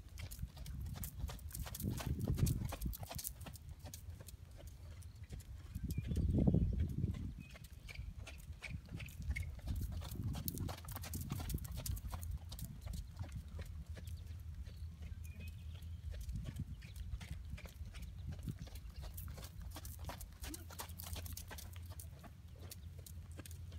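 Horse cantering on a longe line, its hooves beating repeatedly on sandy arena footing. Two louder low rushing sounds rise and fade about two and six seconds in.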